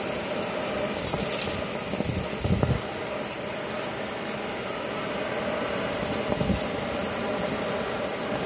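Dyson cordless stick vacuum running, its bare wand sucking up clumps of lint and debris from carpet: a steady motor whine with rapid clicks and rattles as bits are drawn through the tube.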